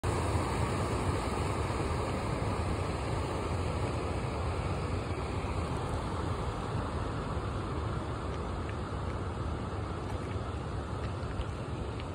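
Steady rumbling outdoor background noise, heaviest in the low end and easing slightly over the stretch, with no distinct events.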